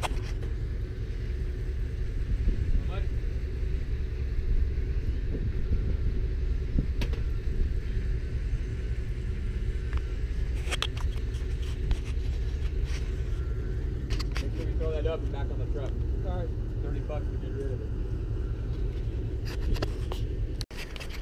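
A steady low mechanical rumble with a constant faint hum, like an engine running, broken by a few faint clicks.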